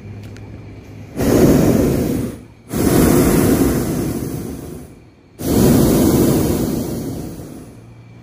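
Hot air balloon's propane burner firing three times, each blast a loud rush that cuts in suddenly and tapers off over a couple of seconds.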